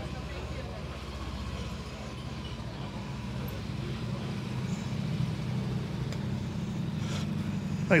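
Honda CB500F parallel-twin engine running at low revs in a steady, even pulse as the motorcycle rolls at walking pace, getting a little louder in the second half.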